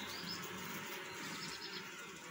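Honeybees buzzing faintly around a frame lifted from an open hive, with a few faint bird chirps early on.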